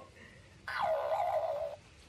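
A hen giving one drawn-out call lasting about a second, starting a little way in.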